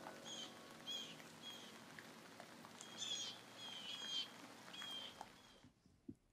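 Faint outdoor birds chirping, about eight short calls scattered over several seconds over a steady faint hiss, cutting off abruptly about five and a half seconds in.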